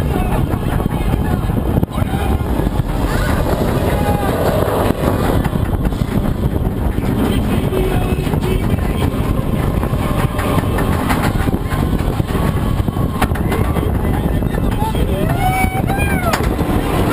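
Roller coaster train climbing its chain lift hill: a steady, loud mechanical rumble and rattle.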